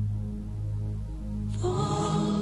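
Music built on a sustained low drone, with higher tones coming in just before the end.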